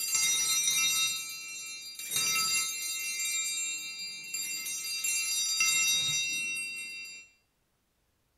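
Altar bells rung three times at the elevation of the chalice, marking the consecration. Each ring is a bright, high jingle that sounds on until the next, and the ringing stops a little past seven seconds in.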